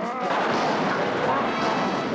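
Continuous loud crashing and rumbling as the Hulk smashes wooden crates and stage fittings. Short growls that rise and fall in pitch cut through it twice.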